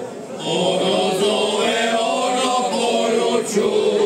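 Male folk singing group singing a cappella in several-part harmony, with a short breath break just after the start and then long held chords.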